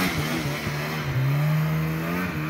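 Old carbureted Yamaha Phazer snowmobile two-stroke engine revving high under throttle as the sled plows through deep snow. Its pitch dips briefly a few times in the first second, then holds steady.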